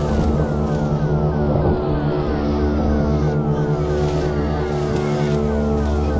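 Synthesized sci-fi drone: a dense, steady droning chord with a short falling electronic chirp repeating about twice a second over a low hum that swells and fades.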